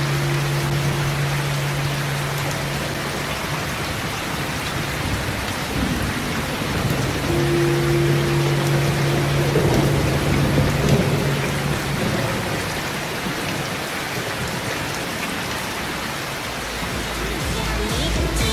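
Steady rain ambience with a low rumble swelling through the middle, under a pair of low held tones that sound at the start and again from about seven to twelve seconds in: the atmospheric intro of a song.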